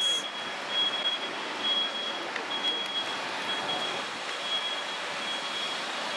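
Busy city street traffic noise with a high electronic beep repeating about once a second.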